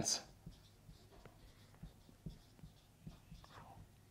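Marker writing on a whiteboard: faint scratching strokes and small scattered ticks.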